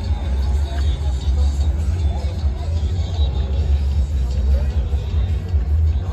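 A steady low rumble, loudest in the bass, with faint music and distant voices in the background.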